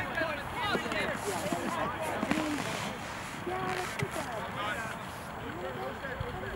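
Scattered distant shouts and calls from soccer players and sideline spectators during play, none of it close to the microphone.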